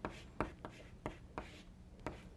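Chalk writing on a chalkboard: faint short taps and scrapes, about a handful over two seconds, as letters are chalked.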